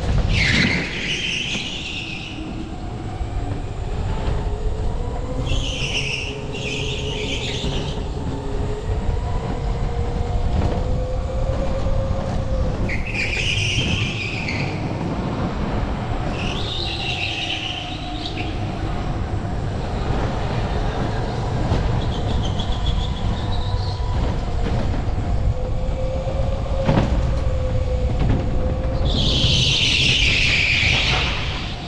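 Electric go-kart motor whining, its pitch rising and falling with speed, over a steady rumble from the kart on the track. Short bursts of tyre squeal come about half a dozen times as the kart goes through corners.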